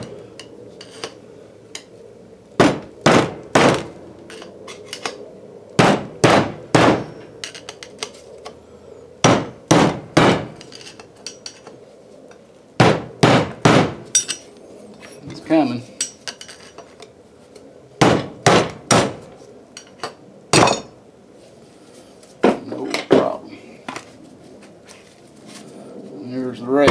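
Hammer blows on a big screwdriver used as a drift, driving the old bearing race out of a 1985 Chevy K10 front wheel hub from the back side. The metal-on-metal strikes come in quick bunches of three or four, with pauses between as the screwdriver is moved around the edge of the race.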